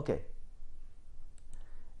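A man's voice says 'okay', then a low steady hum with two faint clicks about a second and a half in.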